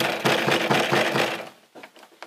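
Rapid, loud pounding knocks on an apartment door, about six or seven blows a second for about a second and a half, then stopping.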